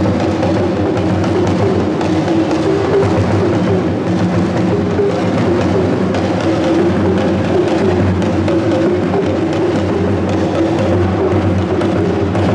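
Hourglass talking drums beaten with curved sticks, playing continuous drumming without a pause.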